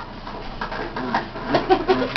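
Short, low vocal sounds with a wavering pitch, about a second in and again near the end, among a few light knocks in the room.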